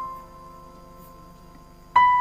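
Soft background piano music: a single note struck at the start rings and fades away, and the next notes come in at the very end.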